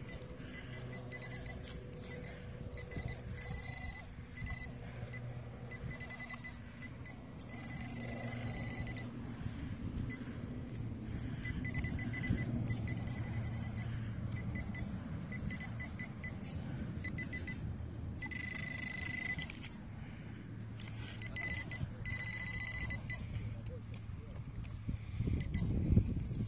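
Metal-detecting pinpointer giving a steady high beep tone in stretches of one to several seconds as it is held in and around the hole, locating a buried target. Between the tones, soil is dug and scraped with a hand digger.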